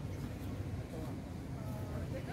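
Faint distant voices over a steady low rumble.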